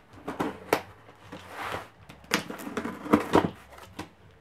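Box cutter slicing through packing tape on a cardboard box, heard as irregular scrapes and sharp crackling snaps of tape and cardboard.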